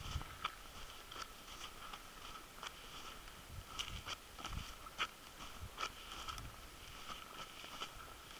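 Faint, irregular crunches and clicks of footsteps on burnt, ash-covered ground. A faint steady high-pitched tone sits underneath.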